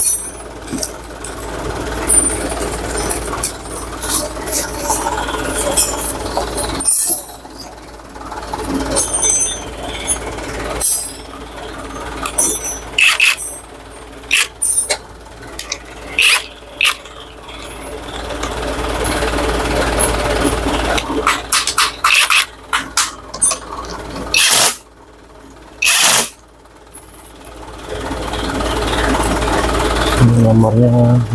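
Metal tools and engine parts clinking and knocking during engine assembly, with a cordless power tool running in stretches.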